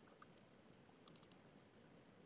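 A quick run of about four computer mouse clicks, a little after a second in, against near silence.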